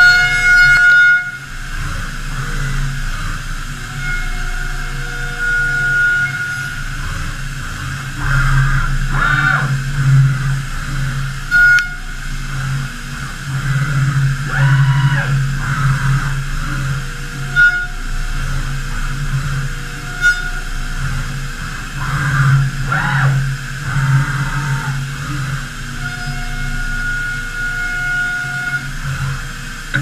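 Five-axis CNC machining centre between cuts: its axis drives whine up and down in pitch several times as the tilting rotary table and spindle reposition, over a steady machine hum, with a couple of sharp clicks.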